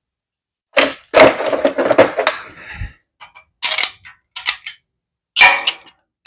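Metal hand tools, a socket and ratchet, clicking and clanking against a small-block Chevy's cylinder head as the number one spark plug is taken out. The noise comes in several separate bursts.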